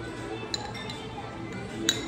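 A ceramic soup spoon clinking against a ceramic soup bowl: a light clink about half a second in and a sharper, louder one near the end, over background music.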